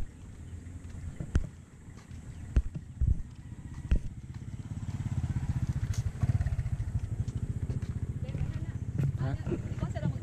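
A vehicle engine running close by, with a rapid low pulse, getting louder from about halfway through. A few sharp knocks come in the first four seconds.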